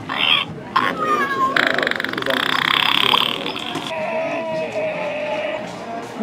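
Recorded fart sound played through the small speaker of a novelty sound book when its button is pressed: a raspy, buzzing blast of a couple of seconds, trailing into a lower, steadier note. A few voices are heard just before it.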